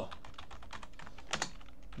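Typing on a computer keyboard: a quick run of about seven keystrokes in two seconds, one a little louder just past the middle.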